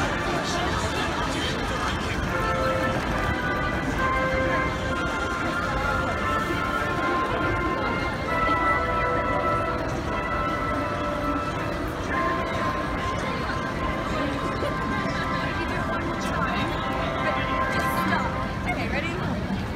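Busy city-crossing crowd ambience, a steady wash of many voices and footsteps, with music playing over it in held, changing notes.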